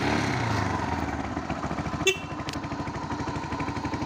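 Motorcycle engine just started, running a little fast at first and then settling to a steady idle. A short click about two seconds in.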